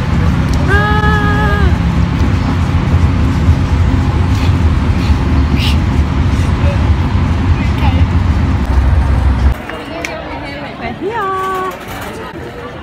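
Loud low rumble of road noise inside a moving bus, with voices over it and one briefly held high voice note about a second in. The rumble cuts off suddenly near the end, giving way to quieter crowd chatter.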